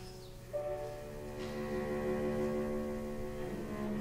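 A cello bowed in long, slow held notes over piano accompaniment; about half a second in the cello slides up into a new sustained note, and the notes change again near the end.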